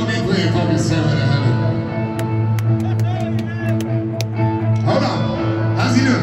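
Live rock band heard through a stadium PA, holding sustained chords over a steady low bass note while a song is paused. Crowd voices close to the phone microphone come up about five seconds in.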